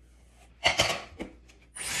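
A few short rustling strokes of a hairbrush through hair. Near the end, a Dyson Airwrap switches on into a steady rush of blowing air with a high whine over it.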